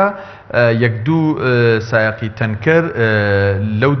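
A man speaking slowly, drawing out two long, level-pitched vowels like hesitation sounds.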